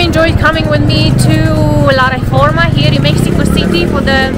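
A woman talking over a loud, steady low rumble of street noise.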